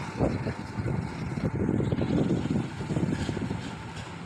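Felt-tip marker writing on a whiteboard: a run of short, irregular scratchy strokes over a low background noise.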